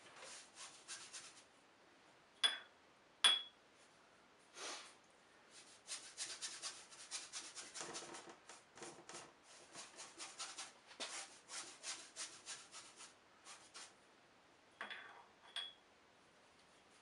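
Paintbrush scrubbing oil paint onto a canvas in runs of quick, short strokes. Two sharp, ringing taps a few seconds in and two more near the end.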